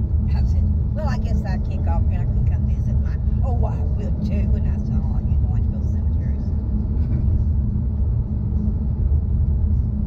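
Steady low rumble of road and engine noise inside a car's cabin at highway speed. A voice is heard over it during roughly the first six seconds.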